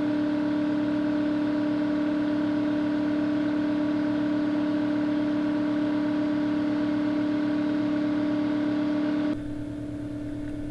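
Husky vertical-tank air compressor running with a steady, even hum. About nine seconds in the sound drops abruptly to a quieter steady hum.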